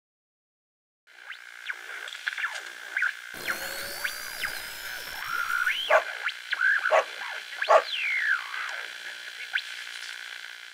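Electronic logo sting: synthesizer swoops and chirps gliding up and down over a steady held tone, starting about a second in.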